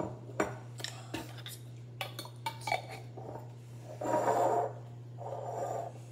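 A glass pickle jar and small plastic cups clinking and knocking against each other and the table, with several sharp knocks in the first three seconds, then two longer, duller noises about four and five seconds in.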